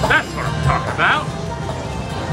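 Slot machine jackpot music playing at a handpay lockup, with three short, high-pitched cries over it in the first second or so.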